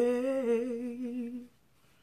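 A woman humming a slow tune with her mouth closed, holding low notes with a slight waver. The humming stops about one and a half seconds in.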